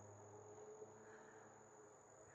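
Near silence: faint outdoor ambience with a thin, steady, high-pitched insect drone.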